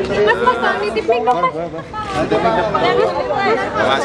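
Several people talking at once in a close-packed group of reporters: overlapping chatter, no single voice standing out.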